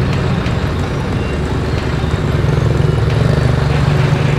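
Close street traffic: a steady low engine rumble that grows louder in the second half, from a dump truck and a motorcycle tricycle passing by.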